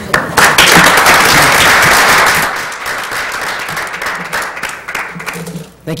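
Audience applause. It starts loud and dense, then thins out and dies away over the next few seconds.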